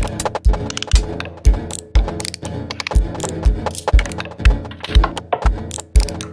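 Electronic music: a deep kick drum about twice a second under sharp, clicking, rattly percussion and sustained synthesizer tones.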